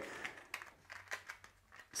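Faint crinkling of packaging with a few soft clicks as the next lures are handled.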